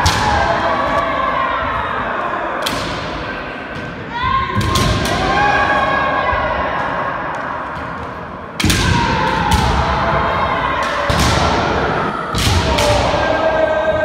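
Kendo sparring: a series of sharp impacts from bamboo shinai striking armour and feet stamping on the hall floor, with long drawn-out kiai shouts between them. Each strike echoes in the large hall.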